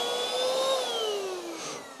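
VACTIDY V8 cordless stick vacuum's motor running in Eco mode with a steady whine, then falling in pitch and fading from about three-quarters of a second in as the motor winds down after being switched off.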